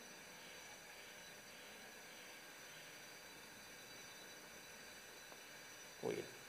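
Near silence: faint steady room tone and hiss, with a single faint tick near the end.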